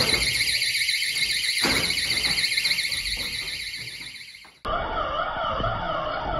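Magnetic door alarm on a steel locker cabinet going off as the door is opened: a shrill, rapidly pulsing alarm. About four and a half seconds in it cuts off and a lower warbling tone takes over.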